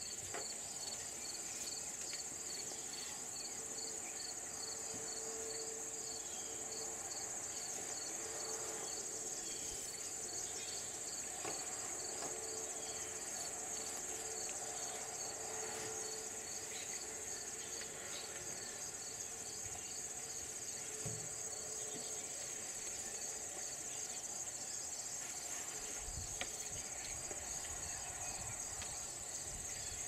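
A chorus of field insects calling: a steady high-pitched trill with an even, regular chirping a little lower in pitch that fades about halfway through.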